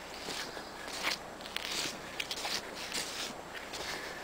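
Footsteps through dry leaf litter and brush, with irregular crackles and swishes of twigs and leaves.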